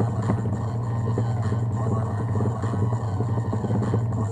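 Music played at maximum volume through a small portable Bluetooth speaker, with a loud, steady deep bass note under the rest of the song.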